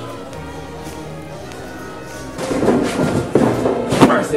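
Classical orchestral background music that swells louder and fuller about two and a half seconds in, with a sharp thud at the very end.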